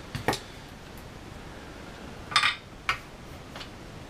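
A few sharp metallic clicks and a short scrape as tools are picked up and handled on a soldering bench, with a louder scrape about two and a half seconds in.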